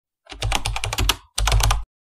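Computer keyboard typing sound effect: a quick run of key clicks, a short break a little past a second in, then a shorter run of clicks.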